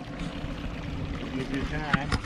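Steady wind and water noise aboard a small boat on open water, with a voice speaking briefly near the end.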